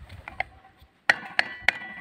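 Metal clicks and clinks of steel brake shoes and return springs being handled and seated on a motorcycle's drum-brake backing plate. There are a few sharp clinks with a short ring, the loudest group coming about a second in.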